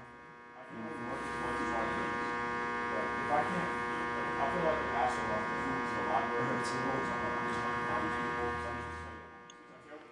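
A steady electrical buzz with many even overtones, fading in about a second in and out near the end, with faint voices under it.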